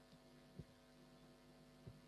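Near silence: a faint steady electrical hum, with two soft low thumps about half a second in and near the end.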